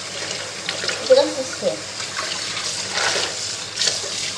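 Water running from a kitchen tap into a sink, with a few clinks near the end and a brief snatch of voice about a second in.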